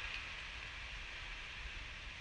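Water draining out of an expandable garden hose after the tap is shut off, a steady hiss as the hose contracts.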